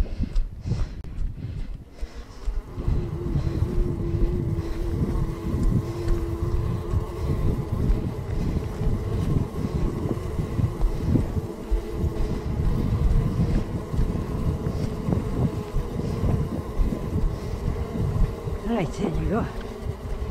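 Wind buffeting and rumbling on the microphone. A faint steady hum comes in about three seconds in and fades after a few seconds.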